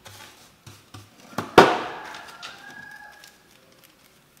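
A few light taps, then one loud, sharp knock on a steel workbench top about one and a half seconds in, ringing briefly as it dies away, among the sweeping of metal filings with a brush.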